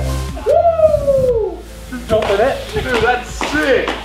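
Several people whooping and yelling in excitement, with one long falling whoop about half a second in and shorter shouts after. Background music cuts out just before the first whoop.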